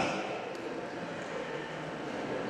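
Faint murmur and room noise of a seated audience in a hall, with no clear voice standing out.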